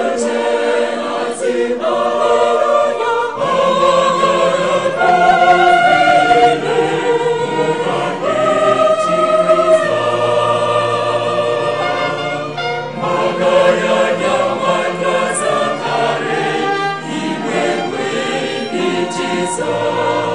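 Mixed choir of men and women singing a choral piece, accompanied by a string ensemble of violins and cello, with a sustained low string note under the voices partway through and again near the end.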